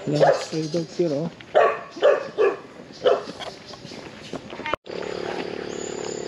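Stray dogs barking, a string of short barks over the first three seconds. After a sudden break near the end, a steady low hum.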